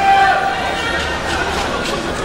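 Badminton arena crowd between points: a babble of many spectators' voices, with one voice calling out loudly right at the start.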